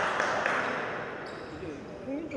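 A basketball bouncing on a wooden gym floor: a few quick bounces, about four a second, ringing in the large hall, that stop about half a second in.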